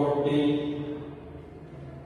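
A man's voice holding a long, drawn-out, chant-like tone that trails off about a second in.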